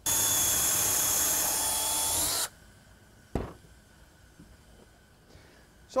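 Cordless drill running at speed, boring a pocket hole in particle board with a stepped Kreg pocket-hole bit through the jig's guide sleeve, for about two and a half seconds before it stops suddenly. A single sharp knock follows about a second later.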